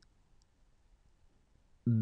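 Near silence between spoken letters, with a voice starting to say the French letter name "B" just before the end.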